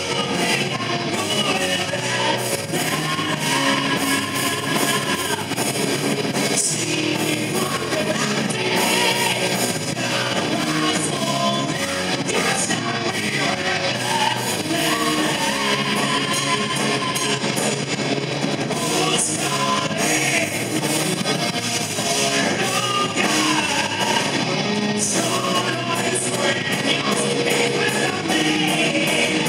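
A rock band playing live: a man singing over distorted electric guitars, bass guitar and drums, loud and continuous.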